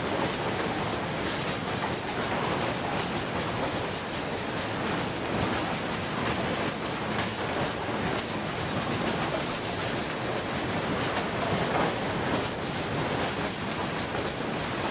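Recycling sorting-plant machinery running: conveyors and sorting equipment moving waste, a steady dense rattle with many small clicks and no let-up.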